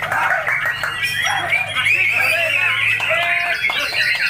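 Many caged songbirds singing at once in a dense, overlapping chorus of chirps and whistled glides, with white-rumped shamas (murai batu) among them. Men's voices shout and call over the birds.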